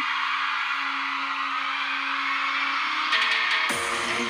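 K-pop live stage intro music: a held synth tone over a steady haze of sound, then the beat comes in with a sudden falling sweep near the end.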